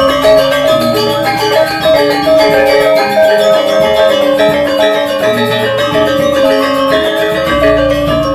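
Balinese gamelan music for the Rejang dance: bronze metallophones ringing in fast repeated note patterns over sustained lower tones.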